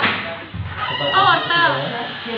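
High-pitched voices of women and children chattering and exclaiming, with no words clear enough to make out.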